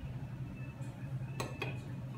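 Two quick clinks of a kitchen utensil against a dish, close together about a second and a half in, over a steady low hum.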